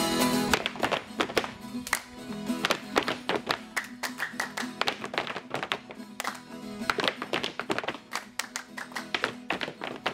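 Catira dancers' boots stamping on a wooden platform and their hands clapping in quick, irregular volleys, over a faint steady string tone. A sung moda de viola with viola caipira breaks off about half a second in.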